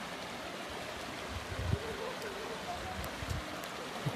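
Shallow river running over rocks: a steady rush of water.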